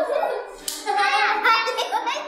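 Children's voices during a warm-up, with a sharp clap about two-thirds of a second in, followed by a high child's voice sliding up and down in pitch.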